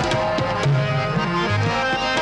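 Live ghazal music: tabla strokes, with the deep bass drum sliding up and down in pitch, under sustained melodic notes.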